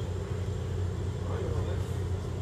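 A steady low machine or electrical hum, with faint voices in the background.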